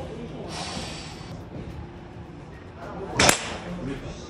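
A golfer's long breathy exhale ('후~') as he relaxes at address, then, a couple of seconds later, one sharp crack of a golf club striking the ball off a driving-range mat.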